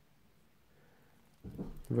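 Near silence (room tone), then a man starts speaking about one and a half seconds in.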